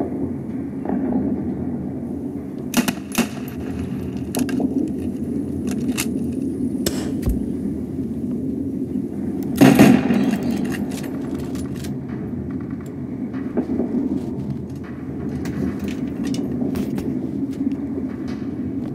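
Battle sound effects: a steady low rumble with scattered sharp gunshots, and one loud bang about ten seconds in.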